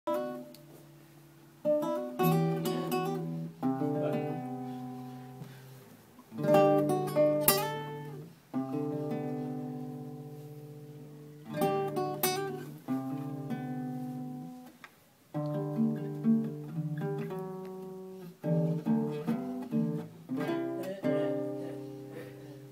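Acoustic guitar strummed in chords, each chord struck and then left to ring and fade for a second or several before the next, with quicker runs of strokes in between.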